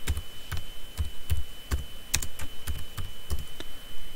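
Computer keyboard being typed on: an irregular run of key presses, about three or four a second, as a short word is entered.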